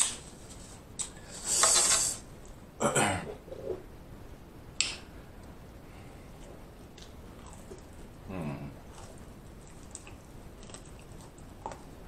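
Close-miked eating sounds of fried chicken being chewed: scattered crunches, mouth smacks and breaths. A louder hiss comes about one and a half seconds in, and sharp clicks come near the middle and the end.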